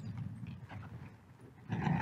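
A pause in a man's talk: faint room noise and quiet breathing, with a breath drawn near the end just before he speaks again.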